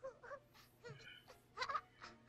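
Faint voice of an animated baby cooing and whimpering in a few short sounds, the loudest near the end.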